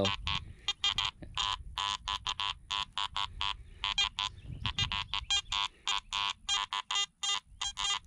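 Garrett AT Max metal detector giving a rapid, irregular string of short buzzy beeps, several a second, as the coil is swept over ground full of buried iron.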